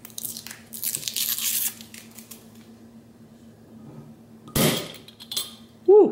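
Paper seal over the swing-top cap of a glass bottle of ginger brew being torn and rustled off, then about four and a half seconds in the wire swing-top stopper is flipped open with a sudden pop and a short hiss of released carbonation. A brief loud pitched sound comes right at the end.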